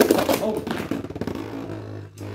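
Beyblade Burst spinning tops colliding and clattering against each other in a plastic stadium. The loudest clatter comes at the very start and fades over the next second, with a steady low hum near the end as one top spins on alone.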